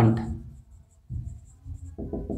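Dry-erase marker writing on a whiteboard: the tip scratching along the board, with a few short faint high squeaks.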